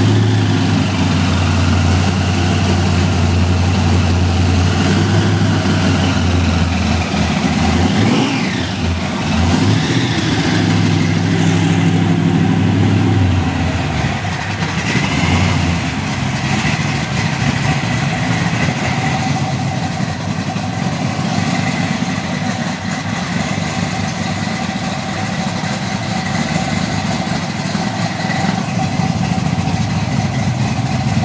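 8-71 supercharged small-block Chevrolet V8 running at idle, a steady engine note whose deep low tone eases about halfway through.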